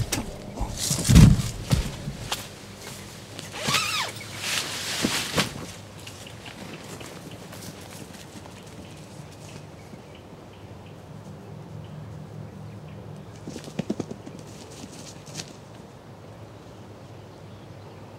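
A shot tom turkey flopping and beating its wings on the ground, in loud irregular bouts with the loudest about a second in, dying down after about five seconds. Later, footsteps through grass as the hunter walks up to the bird, with a few sharp clicks.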